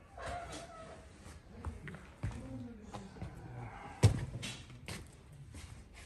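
Scattered knocks and thumps in a room, the loudest about four seconds in, with faint talking in the background.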